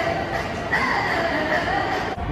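Ballpark public-address sound ringing through the stadium as a batter is introduced: long drawn-out held tones, one fading just as another begins under a second in, over a steady murmur of the crowd.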